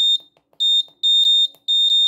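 Piezo buzzer on an Arduino board giving short, high-pitched beeps, about four or five in two seconds. They are key-press feedback, one with each step of the decrement push button as the clock's minutes are set back.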